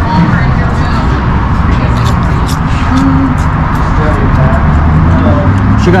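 Steady low rumble of road traffic near an outdoor patio, with faint voices and a few small clicks.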